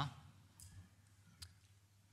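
Near silence with faint room tone, broken by a single small click about one and a half seconds in.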